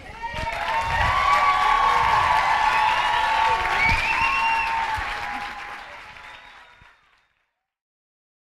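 Audience applauding, with voices calling out and cheering over the clapping. It swells within the first second and fades away, ending about seven seconds in.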